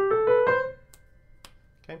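Piano playing the G tetrachord, G–A–B–C, as a quick rising run of four notes that rings out and fades within about a second.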